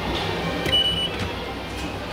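JR ticket-gate IC card reader giving one short high beep as the card is tapped and read, about a third of a second long, with a click at its start, over the steady hum of a busy station concourse.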